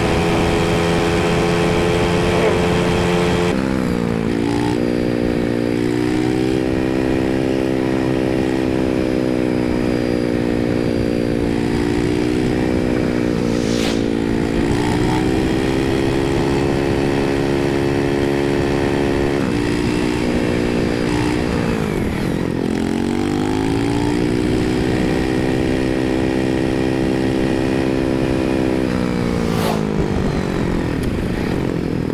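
Motorcycle engine running under way, its pitch climbing and dropping several times as the bike speeds up, changes gear and slows.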